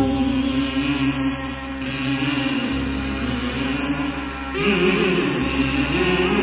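Malayalam devotional film-song music with sustained, chant-like held voices over a steady drone and no drum strokes. A new, higher melodic line enters about four and a half seconds in.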